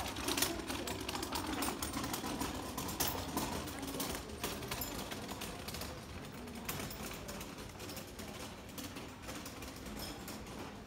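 A Siamese-type cat crunching dry kibble close to the microphone: a rapid, irregular run of small crisp clicks, thinning out in the second half.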